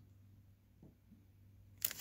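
A quiet stretch, then near the end the foil wrapper of a trading-card pack crinkles suddenly as hands grip it to open it.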